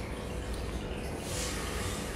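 A steady low rumble of background noise, with a brief soft hiss about a second and a half in.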